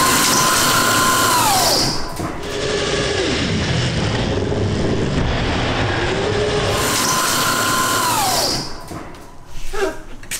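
High-power electric go-kart motor whining at full throttle, with the drive tyres spinning and scrubbing on a concrete floor. The whine drops in pitch about two seconds in, climbs back around six seconds, then falls away near the end. The throttle is stuck pinned wide open.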